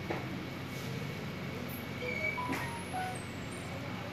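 Ward room tone: a steady low hum with a few brief, faint tones and light clicks around the middle.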